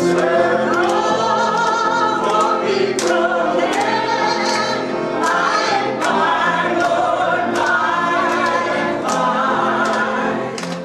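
Music: a choir singing a song over accompaniment with a steady beat.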